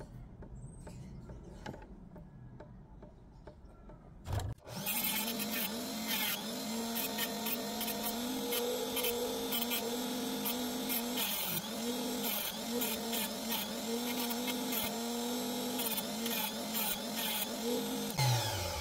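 Dremel rotary tool with a small cutting disc switching on after a knock about four seconds in, then running steadily, its hum wavering in pitch as the disc cuts rough opal.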